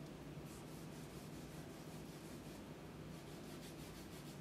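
Faint, repeated strokes of a paintbrush rubbing over canvas as wet paint is blended, over a low steady room hum.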